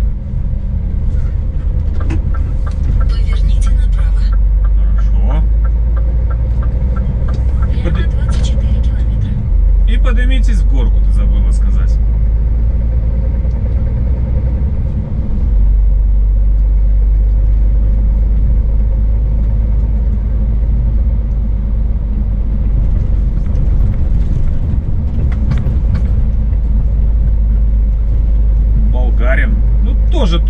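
Scania S500 truck driving, its engine and road noise a deep steady drone that steps up in loudness about nine seconds in and again around fifteen seconds.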